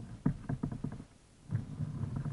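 Two kayak paddle strokes in the water, each a quick run of low knocks, the second about a second and a half after the first.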